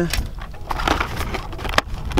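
Rustling and scattered sharp clicks of shattered plastic phone-case fragments and cardboard packaging being picked through by hand, over a low rumble.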